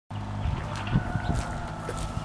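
Footsteps, several low thumps, over a steady low hum.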